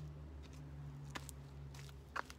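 Steady low hum with a few faint clicks.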